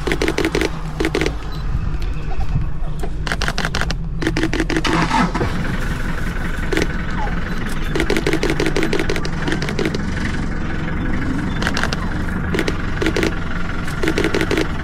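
A safari jeep's engine idling steadily, with short bursts of rapid clicking several times over it.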